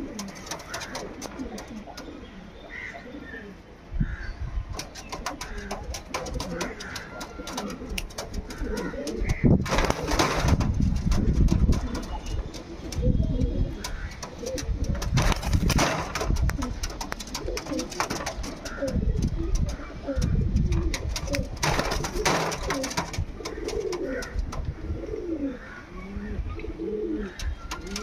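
Andhra high-flyer pigeons cooing again and again in short low calls, with small clicks. From about four seconds in there are bursts of low rumbling noise, loudest around ten to twelve seconds in.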